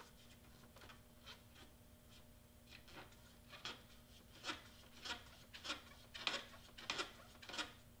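Cotton wadded on a toothpick rubbing and twisting inside an Epson EcoTank printer's ink tank opening, mopping up leftover ink: faint short scratchy strokes, sparse at first, then louder and coming about every half second in the second half.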